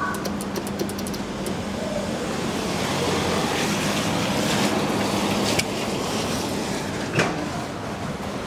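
Steady urban traffic noise with a low hum. A quick run of light clicks comes in the first second and a half, and a single sharp knock comes about seven seconds in.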